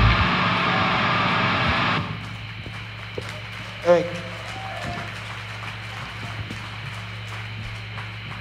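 A live band's final chord ringing out through the amplifiers for about two seconds, then cut off sharply. After it comes a steady amplifier hum, with one brief shout about four seconds in.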